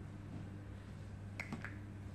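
Two sharp clicks in quick succession about one and a half seconds in, over a steady low hum.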